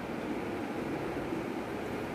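Steady background rushing noise at an even level, with no distinct sounds standing out.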